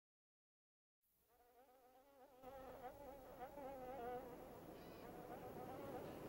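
Silence for about a second, then a faint, eerie drone of wavering tones fades in and grows louder over a rising hiss, from a horror film's opening soundtrack.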